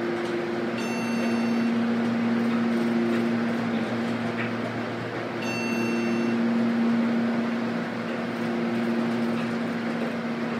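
1995 Montgomery KONE elevator running up between floors, a steady low motor hum with cab noise. Two short, high electronic beeps sound about a second in and again about four and a half seconds later.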